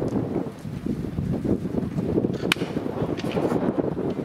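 A single sharp crack of a wooden bat hitting a baseball, about two and a half seconds in, over steady low background noise.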